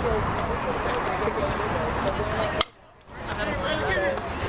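Softball bat striking a pitched ball, one sharp hit about two and a half seconds in. Spectators' chatter runs under it, and the sound cuts out for a moment right after the hit.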